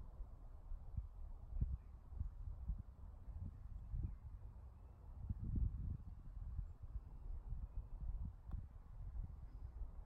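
Wind buffeting the microphone outdoors: a low, uneven rumble that comes and goes in gusts, strongest about halfway through.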